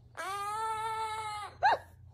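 Monk parakeet giving one long, steady call, then a short rising-and-falling chirp near the end.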